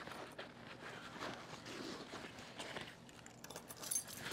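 Soft rustling and handling of a nylon camera sling bag as items are tucked into its pocket and the flap is lifted, with a few small clicks near the end.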